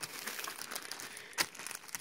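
Small clear plastic zip-lock bag of spare parts rustling and crinkling faintly as it is handled, with one sharp click about one and a half seconds in.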